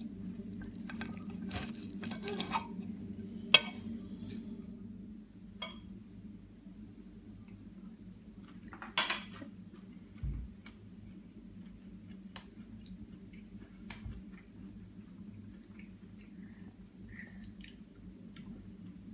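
A fork clinking and scraping against a ceramic plate in scattered clicks, the sharpest about three and a half seconds in, over a steady low hum.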